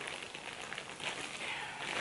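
Plastic packaging rustling and crinkling as it is handled, a little stronger in the second half.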